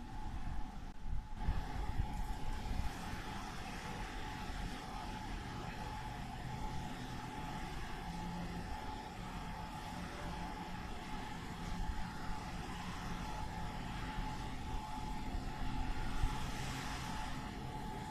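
Steady outdoor background noise with a constant faint hum. Wind rumbles on the microphone in uneven gusts, strongest in the first few seconds.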